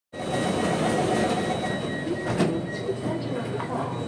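Interior noise of a C751A North East Line train car, a steady rumble with a faint steady high tone. A rapid string of short high beeps runs through the first two and a half seconds, ending with a single sharp knock.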